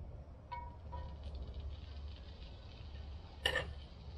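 Metal tongs clinking twice against a cast-iron skillet, with short ringing tones, as a brown-sugar-glazed grouper rib is laid into the hot pan, over a faint steady sizzle. A short burst of noise comes near the end.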